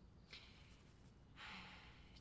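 Near silence, with a faint breath drawn in during the last half second.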